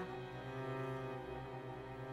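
Symphony orchestra's string section playing slow, held notes, with cellos bowing a low line that steps down to a new note right at the start.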